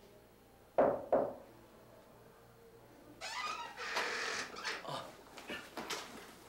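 Two sharp knocks on a door in quick succession, then from about three seconds in a longer rustling, shuffling noise with a brief squeak as the door opens and someone comes in.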